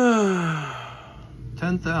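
A man's long, audible sigh, falling steadily in pitch over about a second and trailing off.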